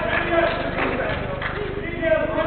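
Men's voices calling out across a large indoor sports hall during a football game, over a steady low hum.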